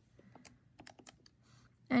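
Faint scattered clicks of calculator keys being pressed to divide 318 by 53.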